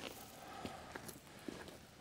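Faint footsteps: a few light, scattered steps or taps against a quiet background.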